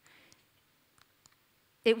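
A quiet pause in a woman's talk: a faint breath, then a few faint small clicks spread over the next second, before her voice comes back in right at the end.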